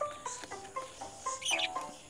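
Background music of short plucked notes in a quick, even rhythm. About one and a half seconds in, a brief high chirp.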